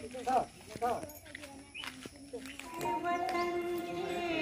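Children's voices calling out in short, rising-and-falling sounds. About three seconds in, a long steady sung note begins: the start of group singing.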